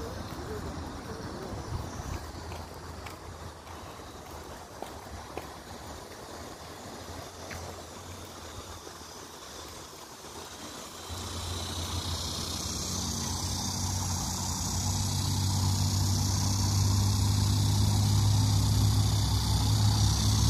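Faint outdoor background with a few light clicks, then about halfway through a motor vehicle's engine comes in nearby as a steady low hum that grows louder toward the end.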